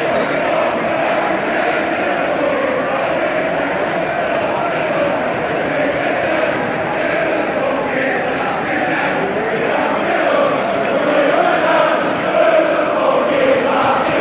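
Football stadium crowd chanting, many voices singing together over the surrounding fans' chatter, growing a little louder in the last few seconds.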